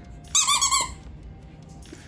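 Squeaker inside a Multipet plush dog toy squeezed once, giving a short, high-pitched, wavering squeak about a third of a second in that lasts about half a second.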